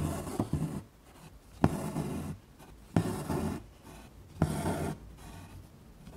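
Hand-embroidery stitching through fabric stretched taut in a wooden hoop: each stitch is a sharp tick as the needle pierces the cloth, then the rasp of thread being drawn through. Four stitches, about a second and a half apart.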